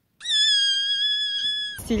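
A steady high-pitched beep, held at one pitch for about a second and a half after a brief upward slide at its start, then cut off suddenly as speech begins.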